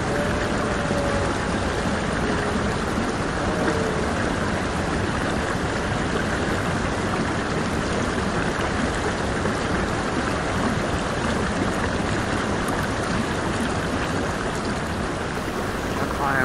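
A river running close by: a steady, even rush of water.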